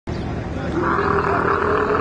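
A dromedary camel bellowing in one long, drawn-out call as men handle it.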